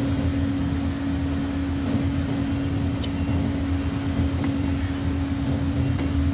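A steady mechanical hum: a low rumble under one constant droning tone.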